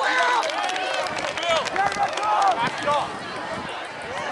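Many voices shouting and talking over one another at once, from players on the field and spectators in the stands, with no single clear speaker.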